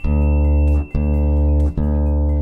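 Thick strings on a large drum-shaped string exhibit, plucked: one deep, pretty low note with a rich buzz of overtones, cut off twice and sounding again each time. The strings are slack, which is why the note is so low.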